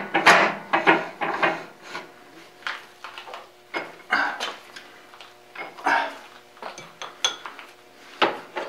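Irregular metal clinks and clanks from a metal lathe's chuck and tooling being handled as a brass piece is chucked and the quick-change tool post is worked. Some knocks ring briefly, and the loudest come in the first second.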